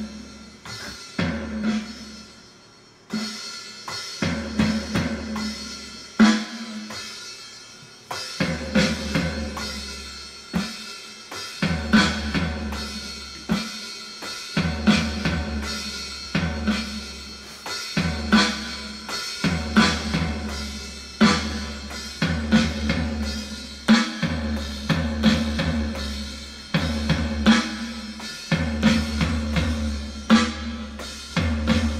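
Electronic drum kit played in a steady kick-and-snare groove with cymbal hits, over a backing song whose low bass notes run underneath. The playing thins out briefly about two seconds in and comes back in strongly about three seconds in.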